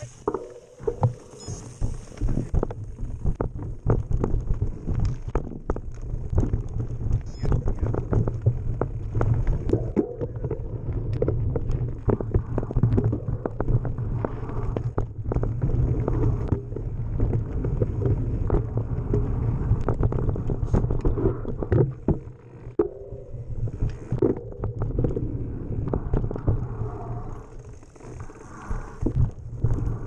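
Mountain bike descending rough, rocky singletrack, heard from a camera mounted on the bike: a steady low rumble with a dense run of sharp knocks and rattles as the wheels hit rocks and bumps. The rumble eases briefly a little after twenty seconds.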